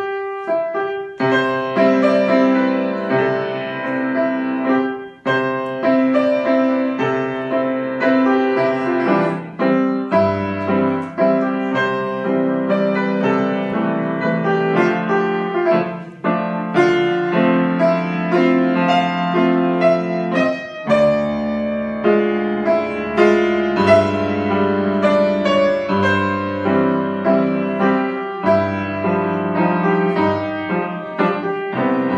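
Grand piano played solo, a continuous piece with chords over a moving bass line. There is a short break in the playing about a second in.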